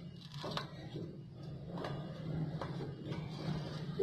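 Strips of tape being peeled off a painted canvas by hand, giving a few faint, scattered crackles and ticks over a steady low hum.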